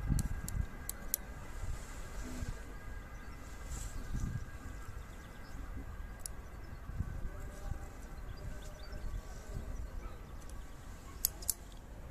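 Pruning scissors snipping off thin young Japanese maple shoots. There are a few sharp clicks of the blades: several in the first second, one around six seconds in, and two just before the end. Soft handling bumps come in between.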